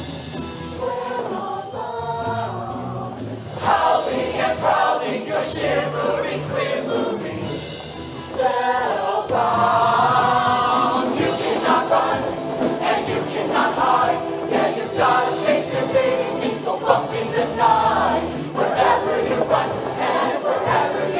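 Show choir of mixed male and female voices singing with musical accompaniment, growing louder about four seconds in and again about halfway through.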